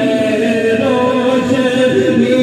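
Unaccompanied devotional chanting of zikr and naat, in long held notes that waver slowly in pitch.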